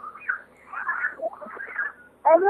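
A caller's voice coming down a telephone line: faint, thin and muffled, the words indistinct, in short stretches with gaps between them.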